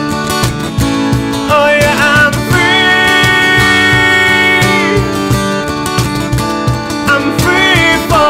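Acoustic guitar strumming with steady cajon beats under it, and a man's voice singing long, bending held notes.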